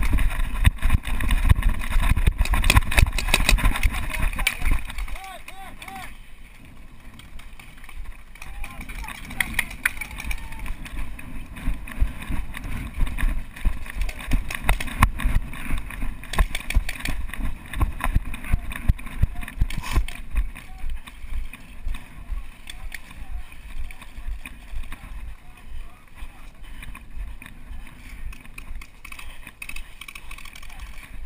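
A paintball player running across grass, with footsteps and gear rattling close to a head-mounted camera and many sharp clicks and knocks. The clicks are densest and loudest in the first few seconds. Faint voices sound in the background.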